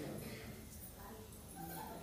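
A person's voice, faint and distant: an off-microphone audience member speaking.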